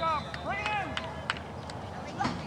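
High-pitched shouts from young voices, twice in the first second, with a few short knocks.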